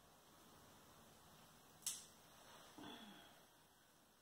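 A single sharp snip about two seconds in, from ikebana scissors cutting through a flower stem, followed shortly by a fainter brief rustle, against near-silent room tone.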